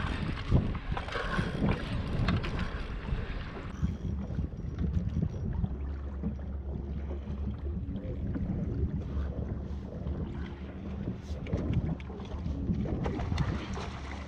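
Wind buffeting the microphone in a steady low rumble, with water moving around a fishing kayak on the open sea.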